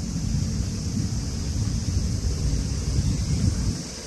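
Low, gusty rumble of wind buffeting the microphone inside a moving ropeway cabin, dropping away sharply just before the end.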